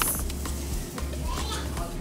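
Background chatter of shoppers and children's voices over a steady low hum, with a short sharp click right at the start.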